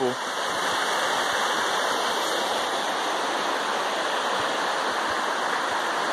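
Creek water rushing steadily over rocks and small rapids, an even, unbroken rush.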